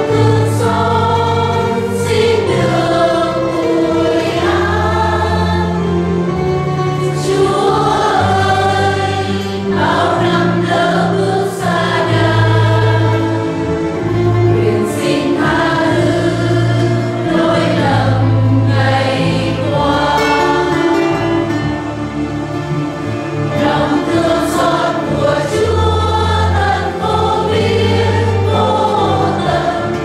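A church choir, joined by the congregation, singing a Vietnamese hymn in sustained, steady phrases.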